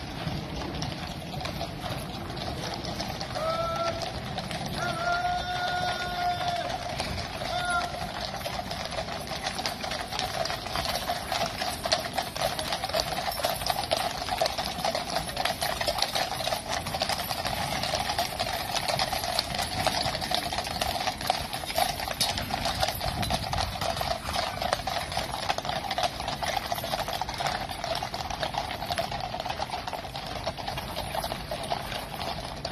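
Hooves of a column of Household Cavalry horses clip-clopping on the road as they ride past, a dense clatter of many hoofbeats that grows thicker and louder from about ten seconds in.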